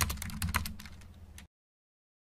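Computer keyboard typing sound effect: a quick run of key clicks that grows fainter and stops about a second and a half in.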